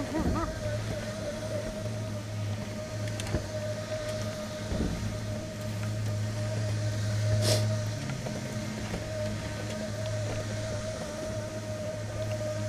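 Surface conveyor lift (magic carpet) running: a steady low hum with a thin steady whine above it, and a few knocks, the loudest about seven and a half seconds in.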